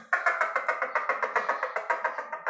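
Cup-and-string chick noisemaker: a wet hand sliding down the string threaded through the cup makes the cup give a rapid run of rasping clucks, several a second.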